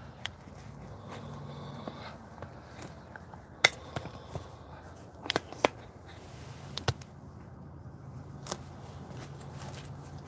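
Footsteps on pavement while the handheld phone rubs against a jacket, with a few sharp clicks and knocks from handling, the loudest about three and a half seconds in.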